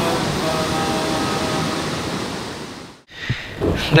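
Steady rush of running water from a small channel as hands scoop water from it, with faint music underneath. Both fade out about three seconds in.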